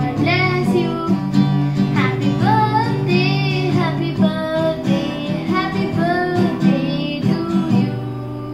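A young girl singing to an acoustic guitar being strummed.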